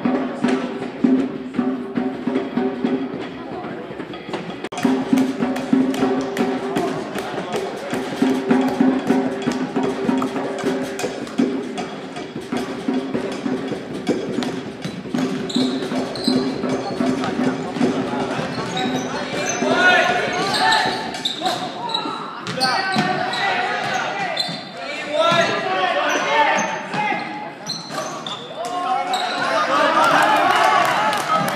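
Music with a steady beat plays through about the first twenty seconds. After that, voices call out across the gym and a basketball bounces on the hardwood floor as it is dribbled.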